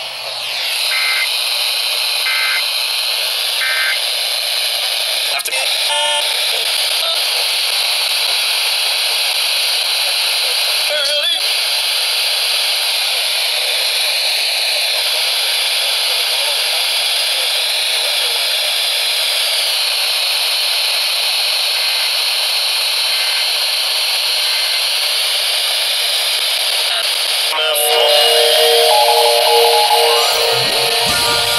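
Three short data-tone bursts, the EAS end-of-message code closing a relayed tornado warning, followed by loud, steady FM radio static hiss from a small handheld weather radio, with a few clicks as it is tuned. A louder steady tone comes in near the end.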